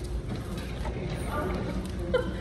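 A faint voice over a steady low background hum, with a single click at the very start.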